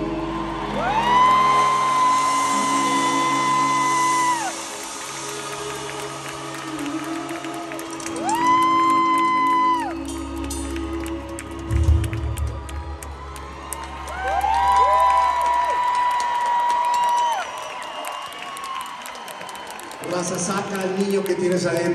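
A rock band playing live: three long held notes, each sliding up into pitch and falling away at its end, over a sustained low bass.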